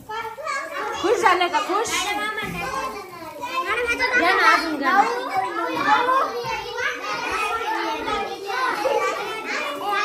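A group of children chattering and calling out over one another, a continuous jumble of young voices with no single speaker standing out.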